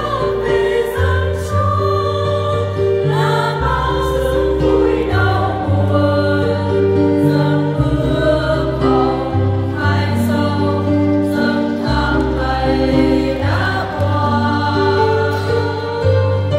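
Choir singing a hymn with instrumental accompaniment, held bass notes changing every second or two under the voices.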